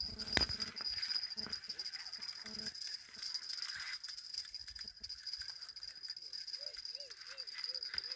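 Crickets trilling steadily at one high pitch, with a few faint knocks of handling. A short run of faint rising-and-falling calls comes near the end.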